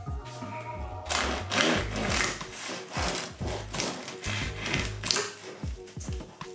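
A bread knife sawing back and forth through the crust of a freshly baked ciabatta loaf on a wooden board, a run of rasping crunchy strokes about two a second starting about a second in, over background music.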